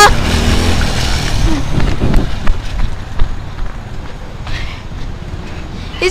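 Small quad ATV engine running as the quad rides away, its sound fading over the first few seconds.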